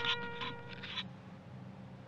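A held trumpet note from the intro music fading out over the first second, with brief rustles as the camera is handled. A faint low hum follows.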